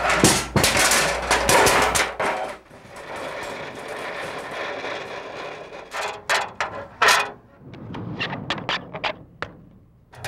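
A garage door opening: a clattering rattle for about two seconds, then a steady rumble as it rolls. After that an aluminium stepladder clanks, with a few sharp metal knocks and then lighter ones, as it is carried and set up.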